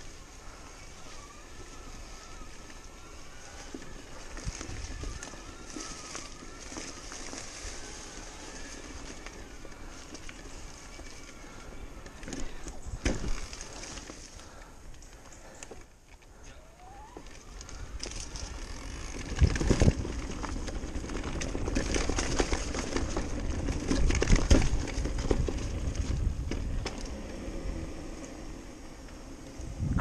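Riding noise from a 2022 Cube Stereo Hybrid 160 full-suspension e-mountain bike on a wet, loose dirt trail: tyres rolling over mud and leaves with knocks and rattles from the bike over bumps. The ride gets louder and rougher in the second half, with heavy thumps.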